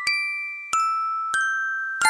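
Music box (orgel) arrangement playing a slow melody: single plucked notes about every two-thirds of a second, each ringing on and fading until the next.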